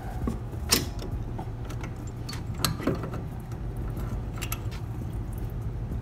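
Metal clicks and clinks of a hand wrench working loose the bolt on a power steering line fitting, scattered a few times over the seconds, over a steady low hum.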